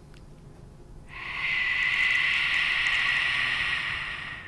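A sustained harsh, hissing screech used as a horror-film sound effect. It starts about a second in, holds steady for about three seconds and then fades out, marking the ghost's appearance.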